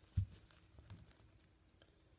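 A soft knock as a deck of thick-sleeved cards is pushed together and squared on a cloth table mat, followed by a few faint clicks of the sleeved cards being handled.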